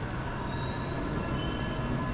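Quiet city background: a steady low hum of distant traffic, with no distinct event standing out.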